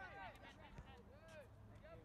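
Near silence with faint, distant voices calling out across a soccer field during play.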